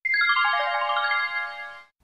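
A short chime jingle: a quick downward run of bell-like notes, each ringing on, so they sound together and then fade out near the end.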